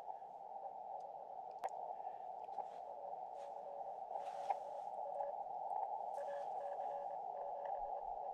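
Amateur radio transceiver's receive audio in CW mode: a steady band of static hiss through the narrow CW filter, which the operator says is heavy with interference (QRM) from nearby power lines. A faint Morse code signal, a single tone keyed in dots and dashes, comes through the noise, clearer from about four seconds in.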